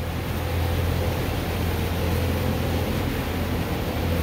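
A steady low machine hum under an even hiss, like a motor or fan running continuously, with no change in pitch or level.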